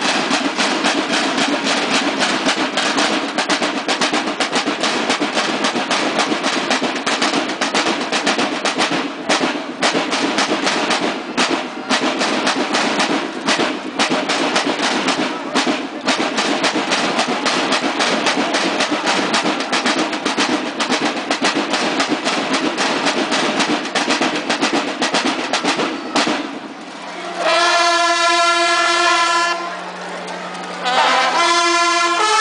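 Banda de guerra snare drums playing a fast, unbroken march cadence that stops about 26 seconds in. The bugles then sound a long held note together.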